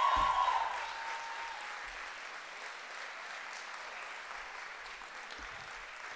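Audience applause, loudest at the start and fading within the first second or so to lighter, steady clapping. A held high tone under it fades out in the first second and a half.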